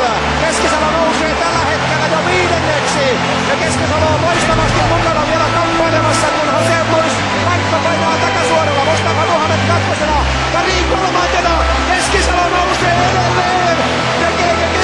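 Music laid over the race footage, with sustained bass notes changing every second or so, over a dense stadium crowd noise.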